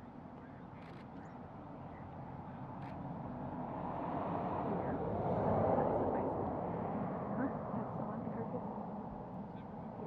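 Rushing noise of a vehicle passing, swelling gradually to a peak a little past halfway and then fading away.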